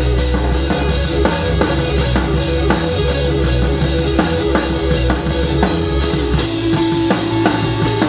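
Blues-rock band playing a groove: a drum kit keeps a steady beat under electric guitar and bass.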